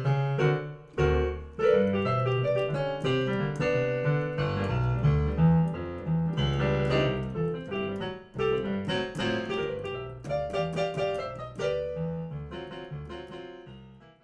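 Blues piano played on a digital keyboard: an instrumental passage of chords and runs with no singing, gradually fading out over the last few seconds.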